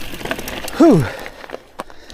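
Mountain bike tyres rolling over a dry dirt trail as the bike slows, with a short vocal sound from the rider falling steeply in pitch about a second in. It then goes quieter, with a few light irregular clicks and knocks.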